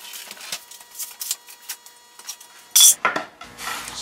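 Light knocks, taps and rubs of a wooden card-table top being lifted off and handled, with one sharp clatter a little under three seconds in.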